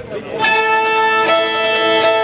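Instrumental music of the next song starts abruptly about half a second in, with long held notes that shift to a new chord about a second later.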